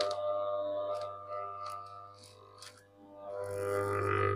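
Sonometer wire driven by an AC electromagnet, vibrating at resonance with a steady low hum rich in overtones. The hum fades away midway and swells back up near the end, with a few light clicks in between.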